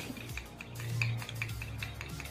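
Teaspoon beating raw egg and olive oil in a small cup, a quick series of light clicks as the spoon knocks against the cup's wall, over a steady low hum.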